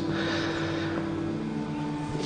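Soft background score of sustained held notes, with a change of chord about one and a half seconds in.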